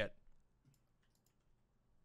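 A spoken word trails off, then a quiet pause with a few faint clicks.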